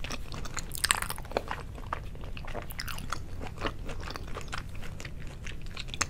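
Close-miked wet chewing of a mouthful of soy-sauce-marinated salmon sashimi: a steady run of small mouth clicks and smacks, with one louder smack about a second in.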